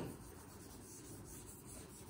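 Faint, steady rubbing of a hand sweeping across an interactive whiteboard screen, erasing handwritten words.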